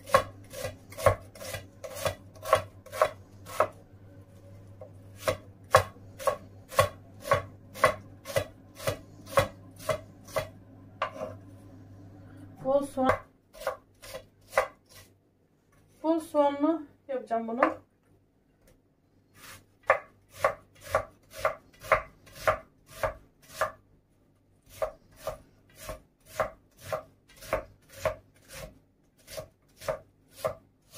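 Kitchen knife chopping onion on a wooden cutting board in steady strokes, about two a second. The chopping stops for several seconds a little before halfway, with one brief pitched sound in the gap, then resumes at the same pace.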